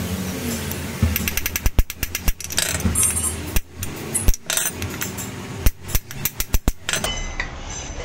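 Hammer blows on a steel drift rod set in the bore of a scooter's gearbox cover, driving out a broken 6004 ball bearing: an irregular string of sharp metallic strikes that stops about seven seconds in.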